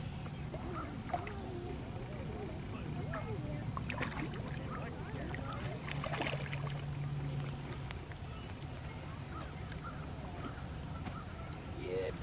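Water splashing as a hooked trout thrashes at the surface near the bank, with the main splashes around four seconds and six seconds in.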